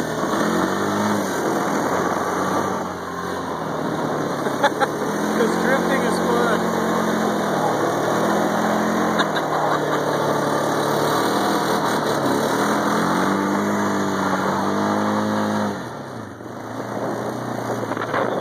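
A quad (ATV) engine running under throttle while it is ridden through snow, its pitch rising and falling with the throttle, easing off briefly near the end.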